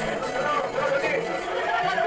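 Several people's voices chattering at once, overlapping and indistinct, in a room.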